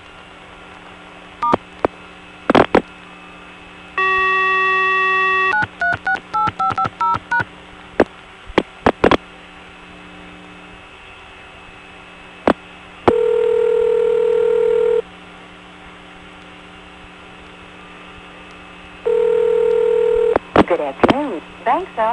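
Telephone line audio: clicks, a steady tone for about a second and a half, then a quick run of touch-tone (DTMF) digits being dialled. More clicks follow, then the ringback tone sounds twice, two seconds on and four off. A recorded time-and-temperature announcement picks up near the end.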